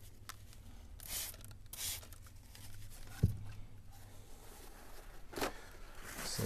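A few soft swishes of a cloth rubbing over wood as glue squeeze-out is wiped off a soundboard rib, with a single dull knock about three seconds in.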